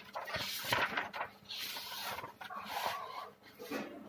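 Sheets of paper rustling and crinkling as they are handled and turned over, in several short swishes with a few light taps.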